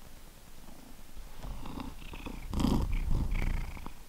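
Orange tabby cat purring close to the microphone. In the second half louder brushing and rubbing noises come in as the cat presses its fur against the camera.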